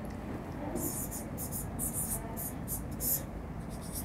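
Pen writing a word on a whiteboard: a quick run of about eight short, scratchy strokes over two or three seconds.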